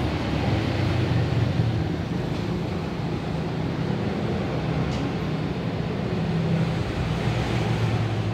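Steady low background rumble with a constant hum, like traffic or a running machine, holding at an even level throughout.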